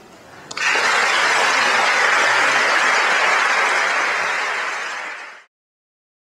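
Audience applauding, starting about half a second in and holding steady, then cut off suddenly near the end.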